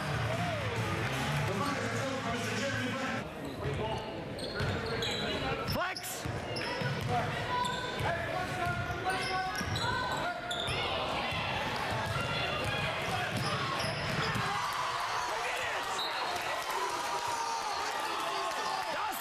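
A basketball bouncing on a gym floor during play, with the voices and shouts of players and a crowd in a large hall.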